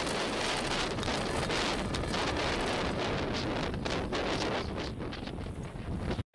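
Falcon 9 first stage's nine Merlin 1D engines during ascent: a continuous rumbling noise full of rapid crackle, growing slightly fainter near the end.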